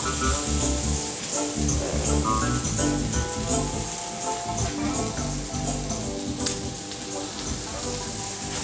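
Chopped onions sizzling in oil in a frying pan, a steady hiss with a few faint pops. Background music plays over it.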